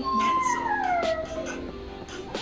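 A dog gives one long whine that slides down in pitch, over background music.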